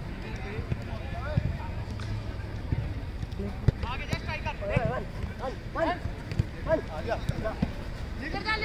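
Players shouting and calling out during a football match, the voices coming in about halfway through. There are scattered short knocks from the ball and feet, with one sharp kick of the ball just before the shouting starts.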